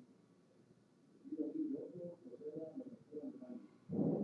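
Faint, muffled voice speaking in a small room. Only the low part of the voice comes through, in broken phrases starting about a second in, with a louder phrase at the very end.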